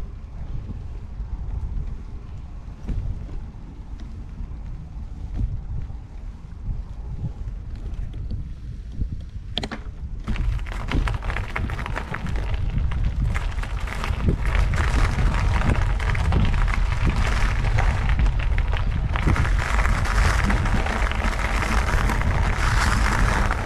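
Low wind rumble on the microphone. From about ten seconds in comes a dense crunching of a loose gravel path being travelled over, growing louder towards the end.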